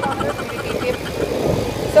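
Motorcycle running along the road, its engine mixed with road and wind noise, with voices heard faintly over it.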